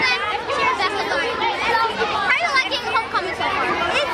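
Children chattering, several voices talking over one another.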